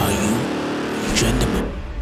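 A produced whoosh transition effect with a sweeping, revving-like rise, carrying over from the theme music that ends at the start.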